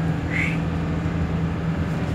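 Steady low drone of a bus's engine and road noise heard from inside the moving bus. A short high chirp comes about half a second in.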